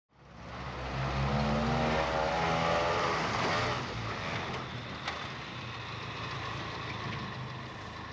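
Motor truck engine running, fading in and loudest in the first few seconds with a wavering whine over a steady low drone, then running more quietly and steadily with a couple of sharp clicks.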